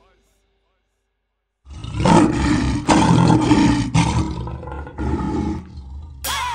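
Lion roaring, a recorded sound effect: starts about a second and a half in with several long, rough roars and ends about half a second before the end.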